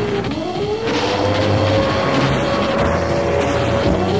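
A motor vehicle's engine running under acceleration. Its pitch drops briefly just after the start, climbs back and holds steady, then drops and climbs again near the end, like revs falling and rising through a gear change.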